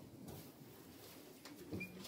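A dove cooing faintly, a short low coo near the end, with a brief high bird chirp at the same moment.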